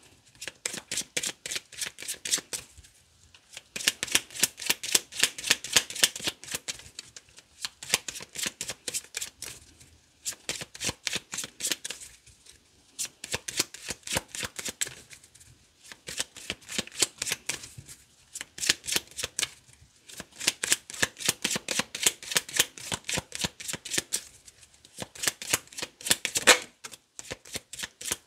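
A deck of tarot cards being shuffled by hand, in repeated runs of rapid card-on-card clicking a few seconds long, broken by short pauses. There is one louder snap near the end.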